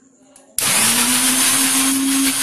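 Electric kitchen mixer grinder running, grinding chillies into a paste. It switches on abruptly about half a second in, its motor quickly coming up to a steady speed with a loud, even whirr.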